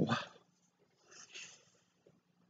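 A voice trailing off with a breath, then two faint short sniffs into a cloth about a second in.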